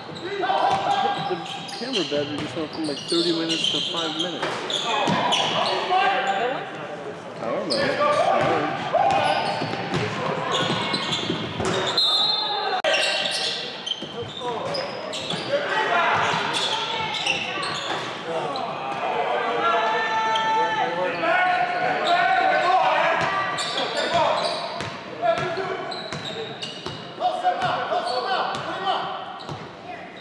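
Basketball game sounds in a large gym: a ball bouncing on the hardwood court and short sharp knocks from play, under indistinct voices calling out from players and spectators.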